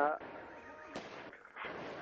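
Low hiss of a telephone line in a pause between a caller's words, with a faint click about a second in.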